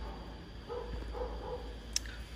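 A dog barking faintly in the background: three short barks about a second in, over a steady low hum.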